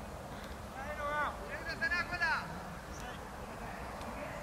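Distant voices of cricketers shouting on the field, two short bursts of calls about a second in and again midway, over a steady low outdoor background.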